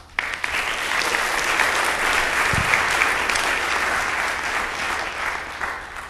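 Audience applauding, starting abruptly just after the talk ends and tapering off near the end.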